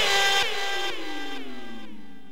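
Closing sound effect of the outro: a tone sliding steadily down in pitch under a few ringing tones, fading out toward the end.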